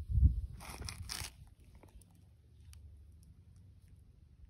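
A low thump, then two short crunching rustles about a second in, followed by a few faint ticks.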